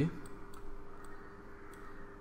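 A few faint computer mouse clicks as points of a pen-tool path are placed, over a low steady hum.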